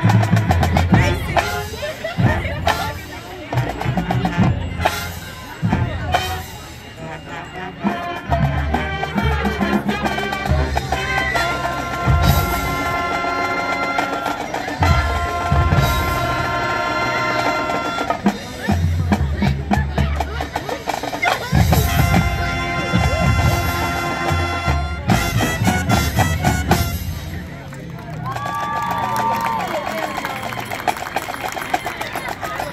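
Marching band playing a field show: heavy drum hits and percussion, with brass holding long chords at several points.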